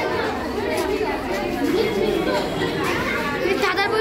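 Crowd chatter: many children and adults talking at once, overlapping voices with no clear words.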